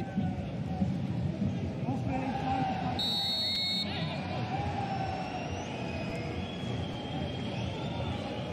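Football stadium crowd noise with fans chanting throughout. A short, high referee's whistle blast comes about three seconds in.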